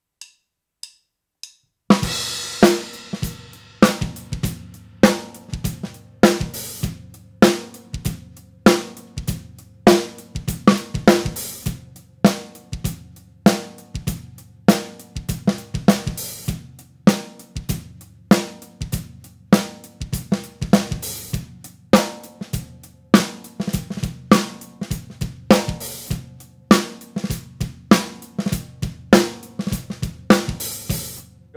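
Four light clicks about half a second apart count in, then a drum-kit groove with bass drum, hi-hat, cymbals and snare. The snare is played first without rimshots, then with rimshots: the stick strikes rim and batter head together, giving a louder popping snare.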